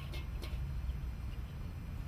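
A steady low background rumble, with a faint click at the start and another about half a second in.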